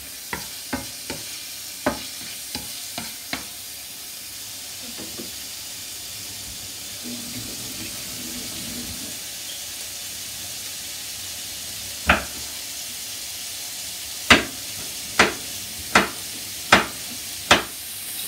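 Pieces of kidney sizzling in oil in a frying pan over high heat, with a wooden spatula knocking lightly against the pan several times in the first few seconds as they are stirred. After that the sizzle goes on steadily, broken by six loud, sharp cracks in the last six seconds.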